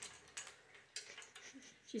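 Faint, scattered ticks and taps from a green-winged macaw moving along her metal perch stand.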